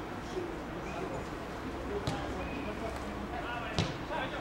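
Players calling out on a football pitch, heard at a distance, with two sharp kicks of a football: one about two seconds in and a louder one near the end.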